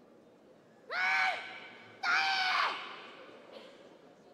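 A female karateka shouting the name of her kata, Anan Dai, in two loud sustained calls, each falling off at the end and followed by a short echo in the hall.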